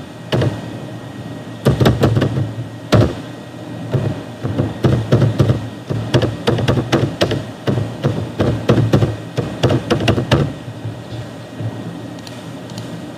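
Computer keyboard typing: irregular key clicks, several a second, with a few louder strokes, over a steady low hum.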